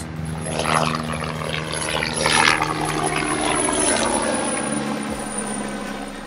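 A propeller airplane flying over: a steady engine drone that swells to its loudest a couple of seconds in, then sinks slightly in pitch and fades toward the end.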